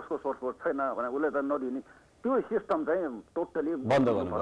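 Speech only: a caller talking over a telephone line.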